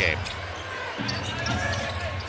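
A basketball being dribbled on a hardwood court, with steady arena crowd noise behind it.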